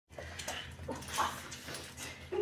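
Six-month-old boxer puppy giving several short whines, one sliding down in pitch, with a few light clicks.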